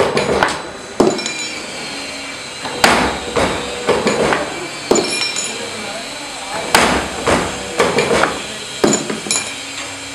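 Automatic rod-forming machine for scaffolding cup-nut handles and G-pins cycling, with clusters of sharp metallic clanks as its dies cut and bend steel rod. A new cluster comes roughly every four seconds, over the steady sound of the machine running.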